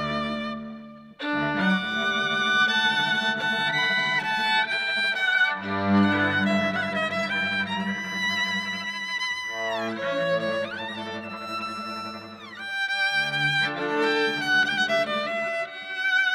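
A string trio of two violins and a cello playing, with sustained bowed notes and vibrato. The music drops away briefly about a second in, and the violins slide down in pitch about ten seconds in.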